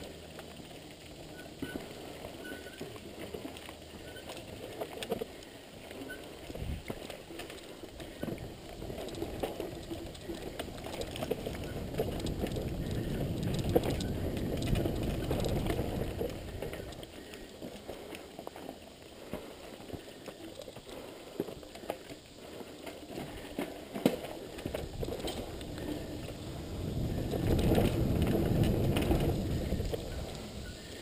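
Mountain bike on a dirt trail: tyres rumbling over the ground with scattered rattles and clicks from the bike, the rumble swelling louder in the middle and again near the end.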